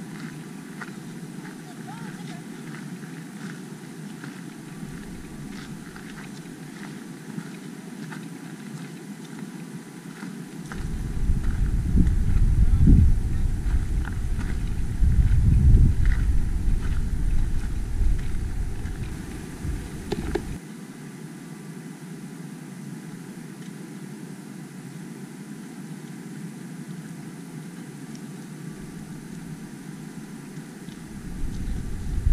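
Wind buffeting the camera microphone as a loud low rumble from about eleven to twenty seconds in, over a steady outdoor background with light, irregular footsteps on a rocky dirt trail.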